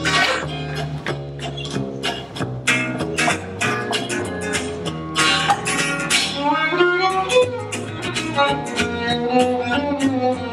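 Gypsy jazz band playing live: two acoustic guitars strumming a steady, evenly spaced rhythm, a double bass beneath, and a violin carrying the melody, with sliding notes in the second half.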